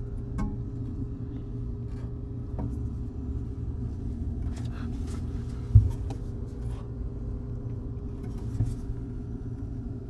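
Steady low rumble with a faint steady hum, broken by a few light clicks and one sharp thump about six seconds in.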